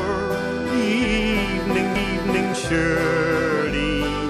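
Irish folk group's recorded song in an instrumental passage between sung lines: acoustic guitar under a wavering melody line, with steady bass notes.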